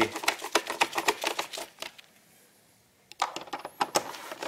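Ratchet with an 8 mm socket clicking rapidly as the plastic air filter cover screws are driven back in. The clicks stop about two seconds in, pause for about a second, then resume near the end.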